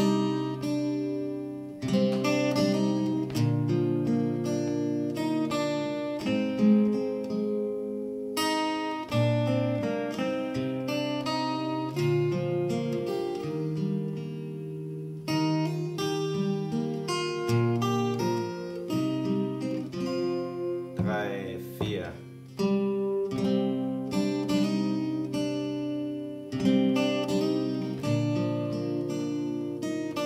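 Steel-string acoustic guitar, capoed at the third fret, played slowly fingerstyle: picked bass notes and melody notes ringing over one another. A brief squeak of a finger sliding on the strings comes about two-thirds through.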